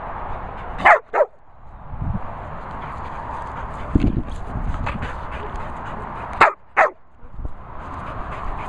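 A dog barking, two quick sharp barks about a second in and two more near the end, each bark dropping in pitch.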